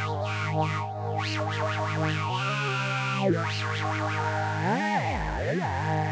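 Roland VT-3 vocal transformer on its synth model, turning a sung voice into a sustained synthesizer tone. It holds steady notes, shifts pitch twice, then glides sharply up and down near the end as the voice slides.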